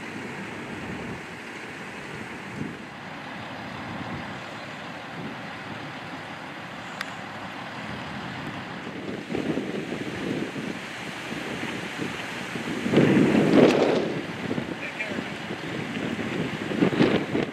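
Fire-ground ambience: a steady rushing noise with fire apparatus engines running. Louder, rough bursts come in from about nine seconds on, the loudest around thirteen to fourteen seconds.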